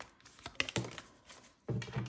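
A tarot deck being handled: cards shuffled and tapped, making a few sharp clicks, as one card is laid face down on the table.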